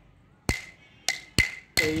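Wooden stick (thattukazhi) beating time on a wooden block, four sharp, ringing strikes with the last two quicker, marking the tempo for Bharatanatyam Thattadavu practice.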